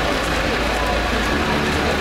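Heavy rain pouring onto wet, flooded pavement: a steady, even hiss of a downpour.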